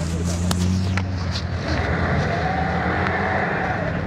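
Lada Niva's engine running under load as the 4x4 pushes through deep snow and sand, a steady low engine note that rises in pitch and then eases off in the second half.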